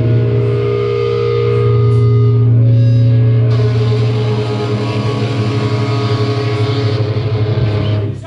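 Distorted electric guitars and bass guitar of a live heavy rock band holding a long, loud, droning chord as the song rings out, with higher sustained tones shifting above it. It cuts off near the end.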